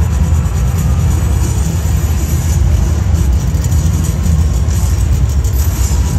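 Loud music dominated by a dense, continuous low rumble.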